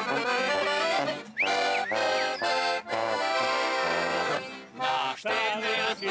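Background music: an accordion playing a lively folk-style tune.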